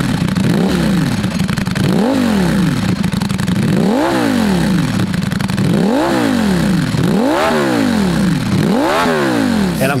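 Ducati Panigale V4 SP2's 1,103 cc Desmosedici Stradale V4 engine idling steadily on the standing bike, with five sharp throttle blips, each rising in pitch and falling straight back to idle.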